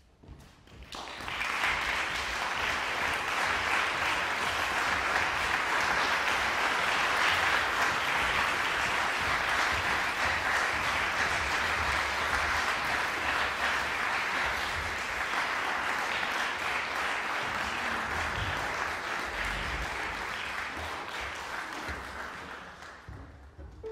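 Audience applauding, starting about a second in, holding steady, and tapering off near the end.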